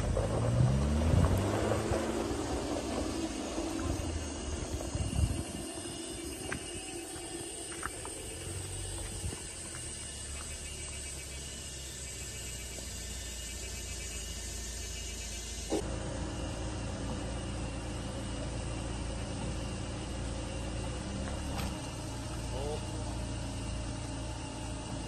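Tank 300 SUV's engine revving under load on a steep gravel climb, rising in pitch over the first two seconds or so. It settles into a steady low rumble, which changes abruptly about two-thirds of the way in.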